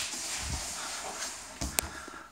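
Faint rustling and handling noise, with a low thump about half a second in and a single sharp click near the end.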